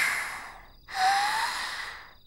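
A young woman's voice taking two long, breathy gasps of about a second each, the second with a faint rising voiced edge, as a voice actress performs heavy breathing.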